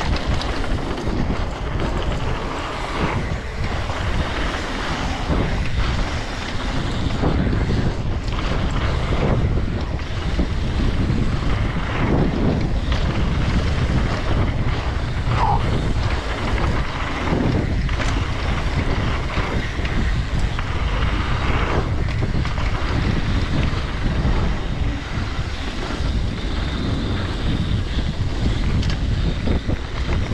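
Wind buffeting an action camera's microphone as a freeride mountain bike rolls fast down a dirt trail, with steady tyre noise and frequent small knocks and rattles from the bike over bumps.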